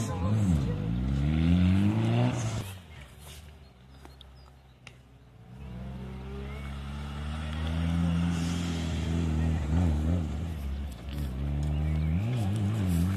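Rally car engine revving hard, its pitch sweeping up and down through gear changes, cutting off about two and a half seconds in. After a quiet spell, another rally car's engine comes in, holding a steady note as it nears and then revving up and down near the end.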